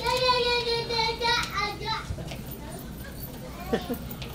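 A young child's high-pitched voice: one long drawn-out call of about a second and a half, then a few shorter calls, with a brief vocal sound near the end.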